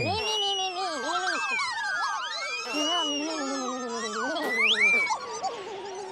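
The Pontipines' squeaky wordless babble, many small voices chattering together in bouncing pitches, with long whistle-like glides rising and falling above them.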